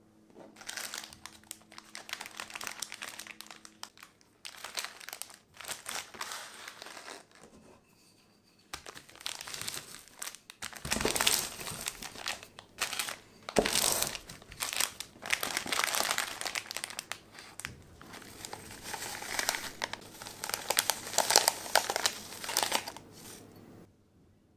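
Plastic biscuit wrappers crinkling and crackling as wrapped biscuits are handled and crushed inside them with a wooden rolling pin. The sound comes in several bouts with short pauses, with two sharp, louder knocks about 11 and 13 seconds in.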